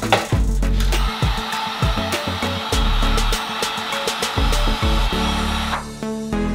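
Handheld heat gun blowing hot air onto PVC sheet to soften it for bending: a steady rushing hiss that starts about a second in and cuts off just before the end, over background music.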